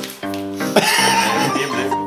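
Background music with steady notes, then a man bursting into wavering, high laughter from a little under a second in.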